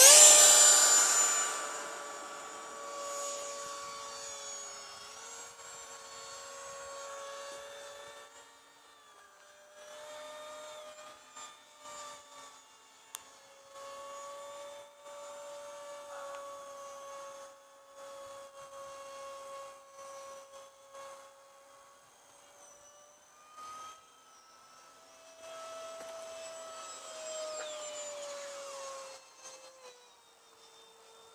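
The 80 mm electric ducted fan of a radio-controlled model jet whining at full power for takeoff, loudest at the very start and fading over the first few seconds as the jet pulls away. Afterwards its whine goes on fainter, the pitch sliding up and down with throttle and passes. It drops out briefly several times.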